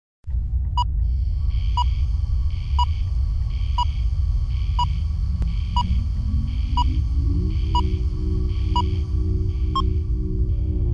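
Synthesized sonar-style intro sound effect: a short ping about once a second over a deep, steady low rumble, with a rising tone that slides up around the middle and then holds.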